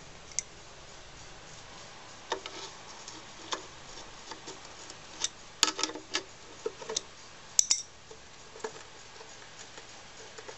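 Adjustable spanner clicking and clinking on the bolts that hold the engine to the mower deck as they are undone: scattered sharp metal clicks, with the loudest cluster about five and a half seconds in and another at about seven and a half seconds.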